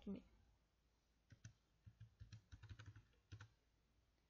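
Faint clicks of computer keyboard keys: a quick run of keystrokes typing a number in.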